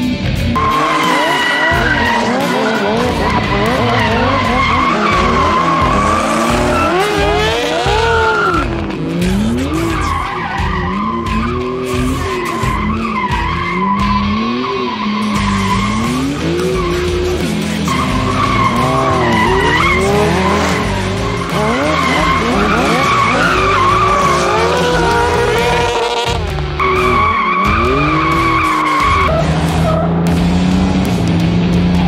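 Engines revving up and down again and again with long tyre squeals, as stunt motorcycles and a Porsche sports car drift around each other, leaving tyre smoke.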